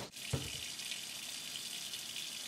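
Water tap running steadily into a sink, with one short low knock about a third of a second in.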